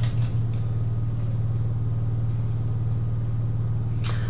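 A steady, low mechanical hum.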